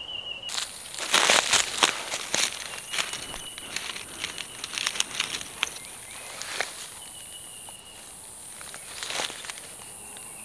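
Dry leaf litter crackling and rustling in irregular bursts as hands and a knife work close to the forest floor to cut a chanterelle. Behind it is a steady high insect buzz.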